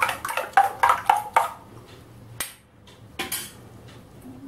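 A metal spoon beating batter in a stainless steel bowl, clinking against the bowl about four times a second, stopping about a second and a half in. A single sharp click and a brief scrape follow later.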